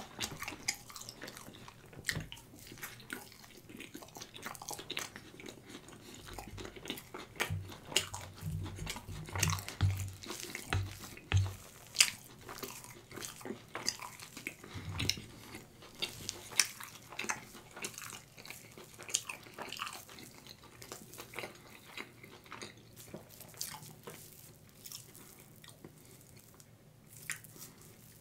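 Close-miked wet chewing and mouth sounds from eating stretchy cheese: an irregular run of sticky clicks and smacks, with a few duller low thuds near the middle.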